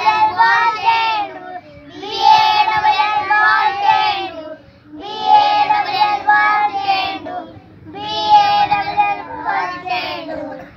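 A group of young children singing a song together, in four phrases of about two seconds each with short breaths between.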